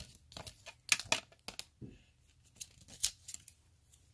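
Miniature plastic doll accessories being handled and lifted out of a small plastic toy suitcase: a series of short, sharp clicks and taps at irregular intervals, with light rustling.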